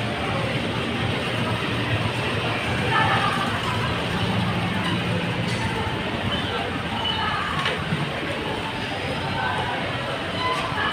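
Busy street ambience: a steady wash of traffic noise, with a low engine hum through the first half and indistinct voices of passers-by.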